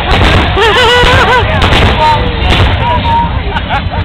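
Fireworks going off in a dense run of booms and bangs, with crowd voices shouting over them.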